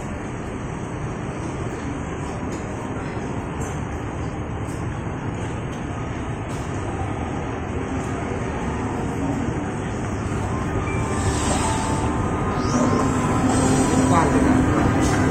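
Steady indoor background rumble while walking through a shop. In the last few seconds, electronic game music and tones from arcade machines come in and grow louder.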